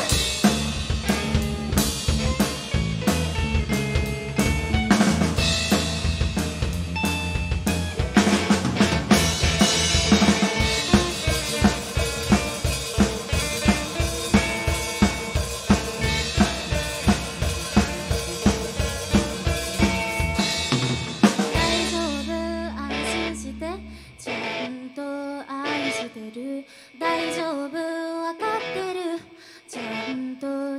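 Live rock band playing: drum kit with snare and bass drum driving hard over electric guitars and bass. About twenty-one seconds in, the full band drops out to a held low note, and a quieter, sparser passage of pitched guitar and bass notes follows.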